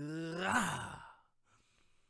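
A man's long, wordless sigh: his voice rises in pitch, then falls away into breath and ends about a second in.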